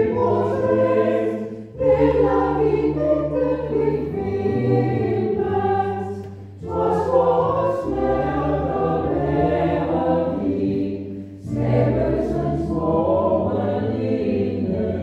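Church choir singing a hymn in phrases, with short breaks between phrases about every five seconds.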